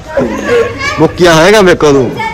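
Loud voices calling out with long, drawn-out sounds whose pitch swings up and down, peaking about a second and a half in.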